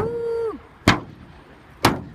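Sharp metal strikes from a long-handled hand tool hammering at the metal edge of a mobile home's floor frame as it is torn apart, three blows about a second apart.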